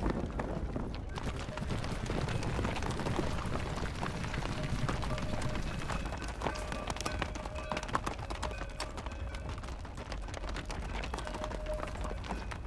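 Horses galloping over dry ground: a dense, rapid clatter of hooves.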